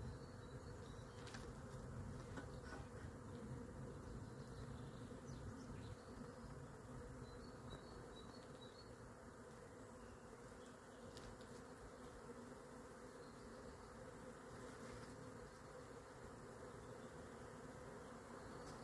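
Faint, steady buzzing of a swarm of honeybees in flight.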